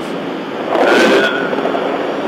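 Steady wind and motorcycle noise heard inside a rider's helmet while riding at speed. About a second in there is a brief louder rush with a thin high whistle.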